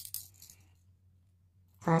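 A sharp click and a few lighter clicks and clinks of pens being handled on a desk, as one pen is put down and another picked up. Then a short quiet.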